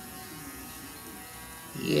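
A hand-held metal gyroscope's rotor spinning at speed, giving a steady, even buzz.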